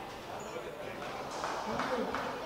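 Faint, indistinct voices echoing in a large indoor court hall, with a light knock near the end.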